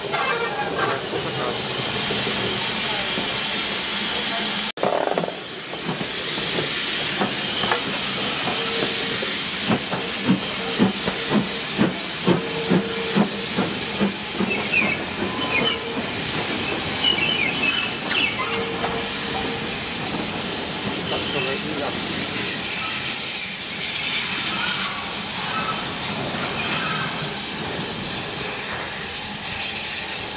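BR Standard Class 4MT 2-6-0 steam locomotive hissing steam as it works away. Through the middle comes a run of evenly spaced exhaust beats, about two a second, and the sound eases as it draws off.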